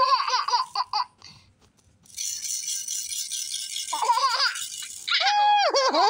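Green plastic caterpillar rattle shaken for about two seconds in the middle, a high, hissy rattling. A baby laughs in short giggling bursts at the start and again near the end.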